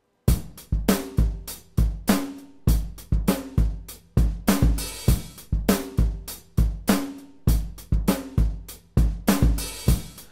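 Raw, unprocessed acoustic drum kit recording playing a steady beat of kick drum, snare and hi-hat, with some drums ringing after the hits and a cymbal wash about halfway through. It starts a moment in and stops just before the end.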